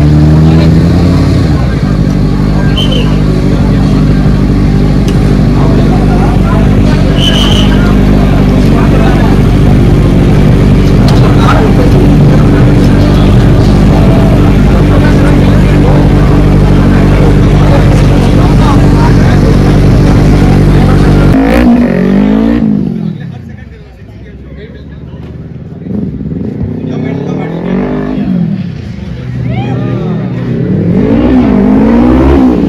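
Motorcycle engines running close by, held at a steady fast idle for about twenty seconds. After a sudden change the sound is quieter, with engine revs rising and falling several times.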